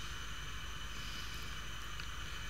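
Steady background hiss with a faint low hum and a few thin steady tones: room tone, with no distinct sound events.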